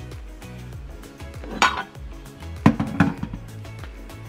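A large glass jar clinking and knocking as peeled hard-boiled eggs are set into it by hand: three sharp knocks, the first about a second and a half in and two close together near the end, over background music with a steady beat.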